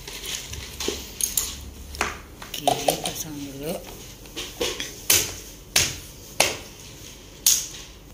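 Sharp clicks and knocks, about eight of them and louder in the second half, from an air fryer's power plug being pushed into a wall socket and handled. A brief murmured voice comes partway through.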